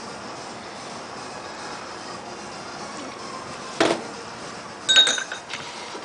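Glassware clinking over steady background noise: a short knock about four seconds in, then a sharp ringing clink of glass on glass about a second later.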